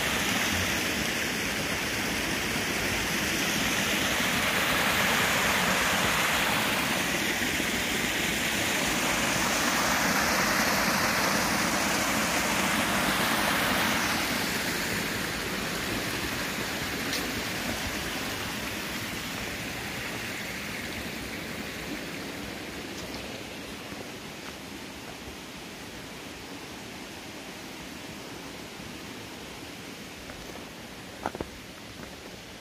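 Water of a mountain stream rushing over small cascades between rock slabs, a steady rush that grows gradually fainter from about halfway through.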